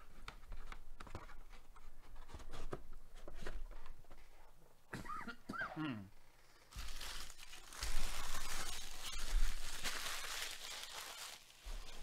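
Plastic wrapping torn open and crinkled for about four seconds, beginning around seven seconds in, after a run of light clicks and taps: the seal coming off trading card packaging as the box of cards is opened.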